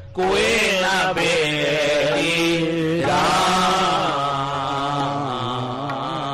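Sikh kirtan: a male voice sings a shabad in long, wavering, ornamented notes over a harmonium's sustained tones. The sound comes in just after a short break at the start.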